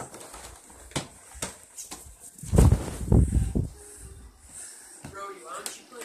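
Handling noise on a phone microphone as the phone is carried: a few sharp knocks, and a loud rubbing rumble about two and a half seconds in lasting about a second.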